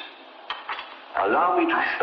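Thin, muffled recording of a voice with clinking of dishes and cutlery, like a sampled spoken intro to a song. The clinks are sparse at first, and the voice grows louder a little past the middle.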